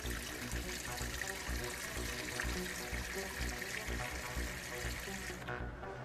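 Beer pouring from a tap into a glass, a steady rushing hiss that stops abruptly about five and a half seconds in, over background music.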